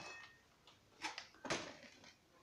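Two light knocks of things being handled on a tabletop, about half a second apart, the second louder, with faint rustling between.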